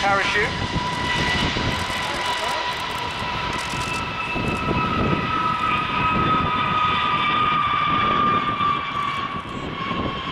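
Boeing B-52H's eight turbofan engines whining steadily during the landing roll-out, a high jet whine over a rumble, its main tone dropping slightly in pitch over the last few seconds.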